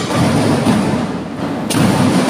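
Marching band percussion: drums playing with a heavy low rumble, and cymbals coming in sharply near the end.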